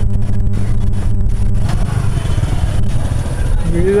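Motorcycle engine running at low speed as the bike rolls along a dirt lane, a steady low rumble with road and wind noise. A voice calls out near the end.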